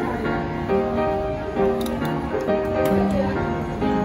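Instrumental background music with slow, sustained notes.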